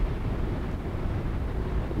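Steady low rumbling background noise, with no distinct event in it.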